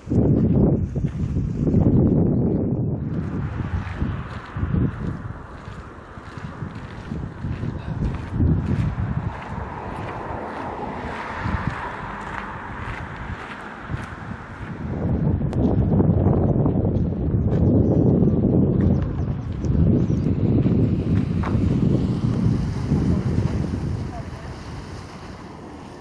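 Wind buffeting the microphone in gusts, heaviest in the first few seconds and again through the second half, with a fainter steady rushing sound between.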